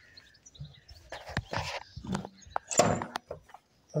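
A few irregular knocks and scrapes of a steel hatch being hung on its hinges and pressed into its frame in a truck's metal box body. The two clearest knocks come about a second and a half in and near three seconds in.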